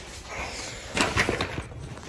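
Handling noise from the recording phone being set down and propped on a low surface: a short clatter of several knocks about a second in.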